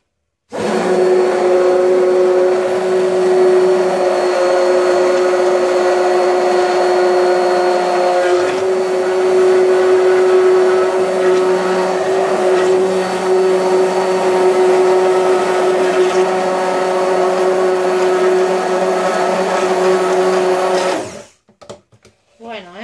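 Hand-held stick blender running steadily in a plastic container of liquid soap mixture, whipping it into a creamy emulsion. The motor hum starts about half a second in, shifts slightly in tone partway through, and cuts off about a second before the end.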